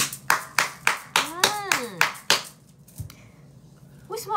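Hand claps, about three a second for two and a half seconds, then stopping. A voice glides up and down in pitch over them in the middle.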